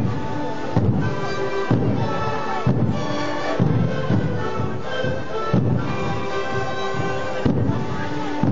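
Live sikuri ensemble playing: many siku panpipes sound a melody together over bombo bass drums, which strike just under once a second.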